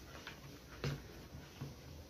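Metal spoon stirring rice flour dissolving in liquid in a plastic bowl, with a few faint soft clicks as it knocks the bowl's sides.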